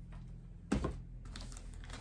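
Handling noise as a plastic-wrapped stainless steel pedal bin is picked up and lifted: a louder knock about two-thirds of a second in, then a few light clicks and taps.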